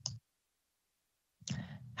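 A near-silent gap in a remote-meeting audio feed: a brief click at the start, then almost nothing, then a short rush of noise about a second and a half in, just before speech resumes.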